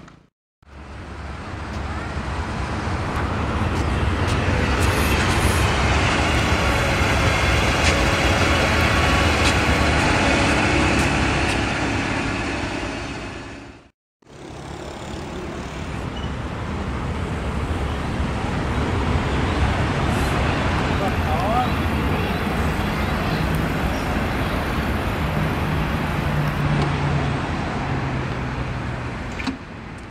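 Vehicle noise: a steady rumble with a low hum that swells up and fades away twice, cut off by a brief silence near the middle.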